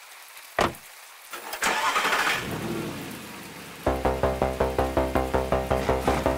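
A short sharp knock, then about a second and a half in a car engine cranks, catches and runs for a couple of seconds. Near the end a synthesizer bassline starts with a steady pulse several notes a second.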